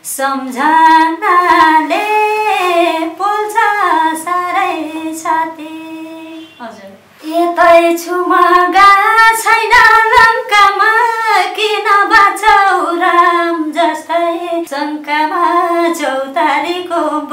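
A woman singing unaccompanied, a gliding Nepali folk-style melody, with a short break about six seconds in before the line resumes.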